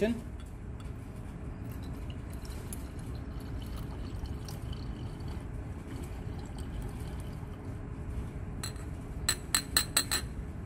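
Crude isopentyl acetate (banana oil) being decanted off its magnesium sulfate drying agent into a glass round-bottom flask, a steady low pouring sound. In the last second or so, a quick series of sharp glass clinks.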